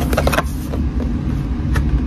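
Cardboard box handled and turned in the hands, with a few sharp taps and scrapes near the start and again near the end, over a steady low rumble.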